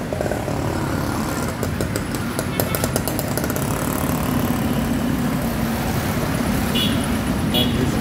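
Street traffic with a motor vehicle engine running close by, a steady low rumble that grows a little stronger in the second half. A patter of clicks comes about two seconds in, and two short high-pitched beeps come near the end.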